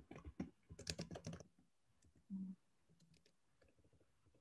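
Faint, rapid typing on a computer keyboard for about the first second and a half, then a few scattered key clicks. A short low hum-like sound comes about halfway through.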